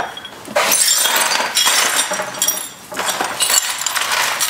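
Shards of broken glass clinking and scraping together in two rattling spells, the second one shorter.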